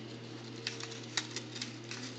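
Faint crinkling and scattered small ticks of a construction-paper chain link being handled and pulled at by a child's hands.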